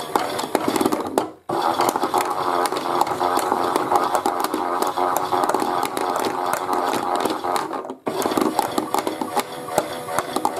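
Chad Valley toy washing machine's small electric motor running as its plastic drum tumbles, with small items clicking and knocking inside. The motor winds down and stops about a second and a half in, then starts again at once, reversing the drum. It stops and restarts the same way about eight seconds in.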